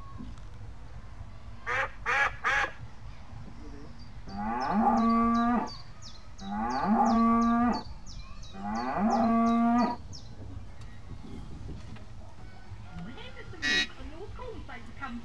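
A cow mooing three times from a ride's farm-animal soundtrack, each moo a long low call that rises at the start and then holds. Three short calls come a couple of seconds before the moos and one more near the end, and a fast high ticking runs over the first two moos.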